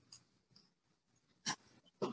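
Near silence, with one short, faint sound about one and a half seconds in.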